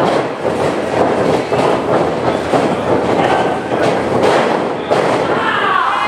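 Loud, continuous din of a small wrestling crowd in a hall, with a shout rising in pitch near the end.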